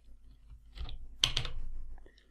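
Computer keyboard being typed in short bursts of key clicks, the loudest run a little past a second in.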